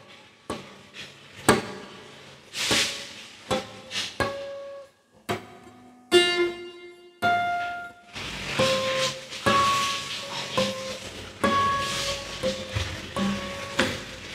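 Acoustic guitar harmonics, plucked one at a time with a fretting hand on the neck. The first few notes are short and dull, and from about halfway on they ring out as clear, bell-like chimes.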